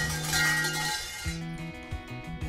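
Shinto shrine bell (suzu) shaken by its hanging rope: a metallic jangling rattle for about a second, over background acoustic guitar music.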